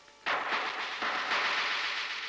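A sudden loud crash from the film's soundtrack about a quarter second in, a noisy cymbal-like burst that holds for well over a second and then starts to fade, leaving a ringing tone.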